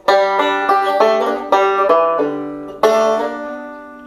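Five-string resonator banjo picked: a quick run of single plucked notes, then a fresh note struck about three seconds in that rings out and fades.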